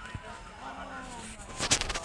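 Handling noise on a phone's microphone as the phone is moved by hand: a short burst of loud knocks and rubs near the end, over faint background talk.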